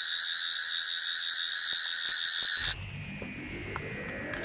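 A steady, high-pitched, rippling electronic tone that cuts off suddenly about two and a half seconds in. It gives way to a rising whoosh and the start of a heavy guitar music intro.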